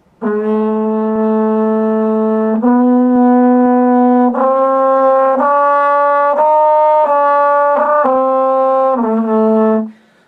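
French horn played with a glass flask held partly inserted in the bell, giving a slow phrase of about nine held notes that climbs and falls back to the opening pitch. The flask is a tone-colour effect that makes intonation unreliable.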